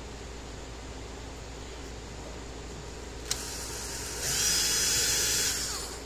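Cordless drill boring through a small black plastic part: a click a little past three seconds in, then the drill speeds up with a rising whine about four seconds in and runs for about a second and a half before it stops as the bit breaks all the way through.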